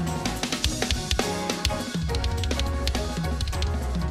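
Drum kit with Sabian cymbals played hard and fast over a recorded music track: a dense run of bass drum, snare and cymbal strokes over steady bass and pitched backing music.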